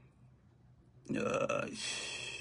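A moment of near silence, then about a second in a man's drawn-out wordless vocal sound that carries on past the end.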